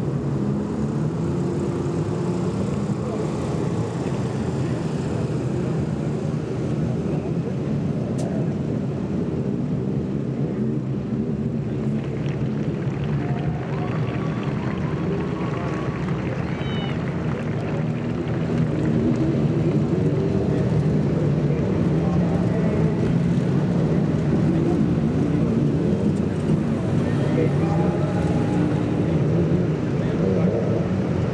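TQ midget race car engines running steadily at low revs, getting louder about two-thirds of the way through.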